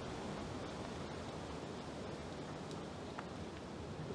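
Steady outdoor background noise, an even hiss with no tones in it, with a couple of faint ticks about three seconds in.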